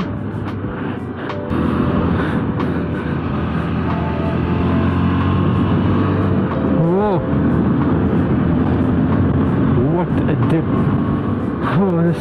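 KTM 390 Adventure's single-cylinder engine running steadily at road speed, the note building over the first few seconds as the bike accelerates, with a brief rise and fall in pitch about seven seconds in.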